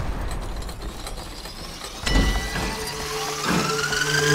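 Clockwork-style sound effects of a title sequence: turning gears and ratcheting clicks over a low rumble. A steady tone comes in about halfway, and a rising tone near the end leads into the theme music.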